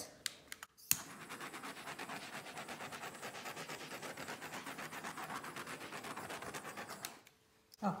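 Handheld butane torch clicking alight about a second in, then hissing steadily for about six seconds before cutting off, as its flame is played over wet acrylic pour paint to pop air bubbles.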